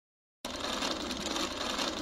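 Buzzing electronic static, a glitch sound effect for a title card, that starts abruptly about half a second in and holds steady.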